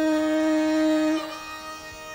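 Hindustani khayal singing in raag Bageshri: the vocalist holds one long, steady note over the harmonium and tanpura drone, and breaks off just over a second in, leaving the quieter tanpura drone sounding alone.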